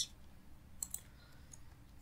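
A few faint computer-keyboard keystroke clicks, the clearest two close together about a second in, over low room noise.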